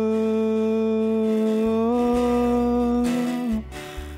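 A man sings with an acoustic guitar: his voice holds one long note that steps up slightly about two seconds in and ends about three and a half seconds in, over sustained guitar chords.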